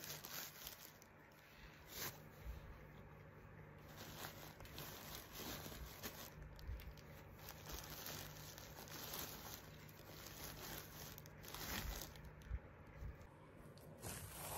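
Faint rustling of scraps of white fluffy wadding being pulled apart by hand and pushed into a gathered fabric pouch, over a steady low hum.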